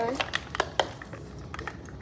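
Several short, sharp clicks in the first second, then a few fainter ticks: the fittings of a small dog's harness being fastened and adjusted.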